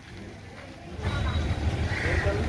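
A vehicle's engine rumble comes in suddenly about a second in, together with a voice through a roof-mounted public-address loudspeaker horn. Before that there are only faint street voices.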